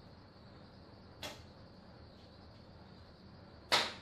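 Two short, sharp clicks of 3D-printed plastic body panels being pressed shut on a model car, a fainter one about a second in and a louder one near the end.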